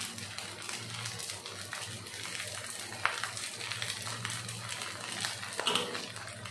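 Fried rice sizzling in a hot wok, a soft continuous crackle over a steady low hum.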